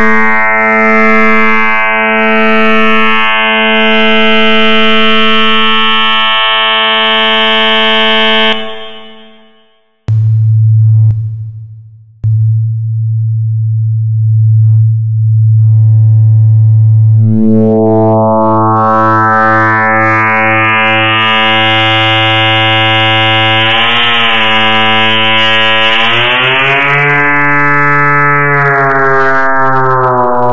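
Electronic sine-wave tones layered into a loud, steady drone: a low pitch with many higher tones stacked above it. The upper tones fade out and the sound sinks almost to silence; then a loud low hum takes over. Later the higher tones swell back in, waver, and the drone steps up in pitch near the end.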